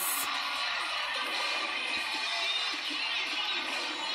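Competition cheer routine's music mix playing, with an arena crowd cheering under it, quieter than the talk around it.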